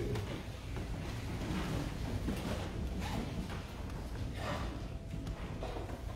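Quiet room tone of a small church in a pause between spoken phrases: a low rumble with faint rustling and a few faint indistinct sounds. A faint steady tone comes in about five seconds in.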